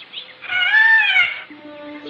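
A peacock's raucous squawk: one long call, its pitch rising and then falling, starting about half a second in. A low held music note comes in near the end.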